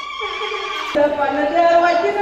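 A woman's high voice calling out: a cry that falls in pitch, then wavering, held notes from about a second in.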